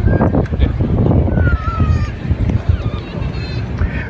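Wind buffeting the microphone, a heavy irregular low rumble, with faint distant voices from the crowd underneath.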